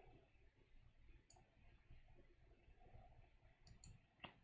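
Near silence with a few faint computer mouse clicks: one a little after a second in, and two close together near the end.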